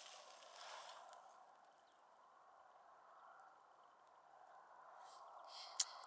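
Near silence: a faint, steady background hiss with no distinct sound.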